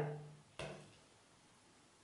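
A woman's drawn-out "so" fading away, a short mouth click about half a second in, then near silence: room tone.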